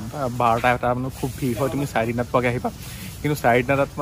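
A man talking continuously, over a steady low hum.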